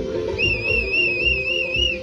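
Music for the Georgian khorumi dance, led by a steady drumbeat, with a high warbling whistle that comes in about half a second in and holds its wavering pitch.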